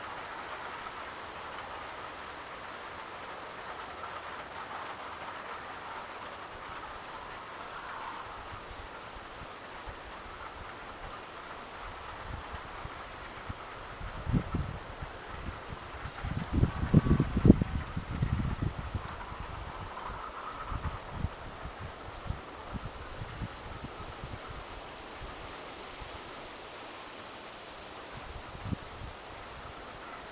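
Steady outdoor hiss, with a few seconds of low, irregular rumbling about halfway through, from wind buffeting the microphone.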